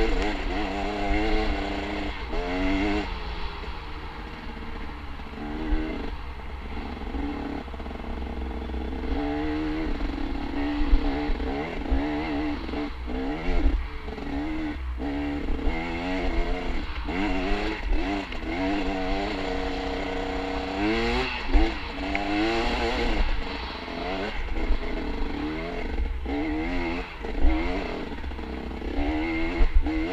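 Dirt bike engine revving up and down repeatedly as the bike rides a twisting trail, the pitch climbing and dropping every second or two, with occasional brief clatters.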